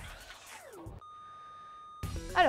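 Quiet background music with a low beat, cut off halfway by a steady, high electronic beep that holds at one pitch for about a second.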